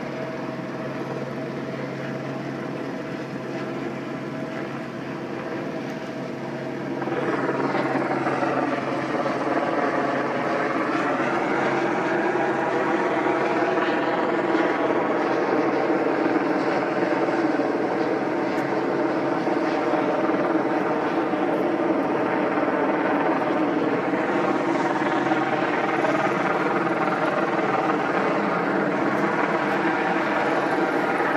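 Helicopter droning steadily, growing clearly louder about seven seconds in and staying loud, its pitch bending slightly as it passes.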